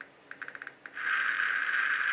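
Geiger-Müller counter's loudspeaker clicking: a few separate clicks, then a quick run of clicks, and about a second in the clicks merge into a dense, steady crackle. The crackle is alpha radiation from a nearby alpha source reaching the tube at a count rate of about 500 per second.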